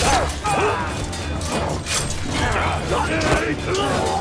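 Staged sword-fight sound mix: men shouting and grunting, with several sharp clashes and blows of weapons, over dramatic music.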